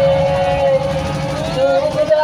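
Loud DJ dance track on a sound system at a break where the kick drum drops out, leaving a long held note with a voice over it; the beat comes back just after.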